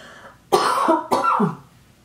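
A woman coughing twice in quick succession, two loud, rough coughs about half a second apart.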